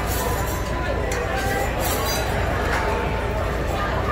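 Restaurant background chatter with a few clinks of tableware, over a steady low hum.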